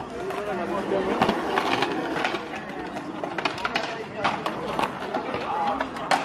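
Skateboard wheels rolling on concrete with several sharp clacks of boards striking the ground, over steady chatter from a crowd of skaters and onlookers.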